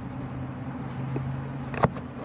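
A camera being set in position: a sharp click near the end, over a steady low hum.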